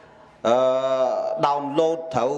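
A Cambodian Buddhist monk preaching in an intoned, chant-like voice: after a short pause he holds one long syllable for about a second, then goes on speaking.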